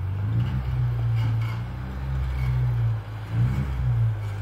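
Off-road rock crawler's engine running at low revs while it crawls down over boulders, its pitch shifting slightly with the throttle; the level dips briefly near the end and then a short burst of throttle follows.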